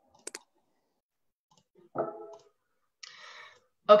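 Two quick sharp clicks, then a short pitched voice-like sound about two seconds in and a soft breathy hiss just before speech begins.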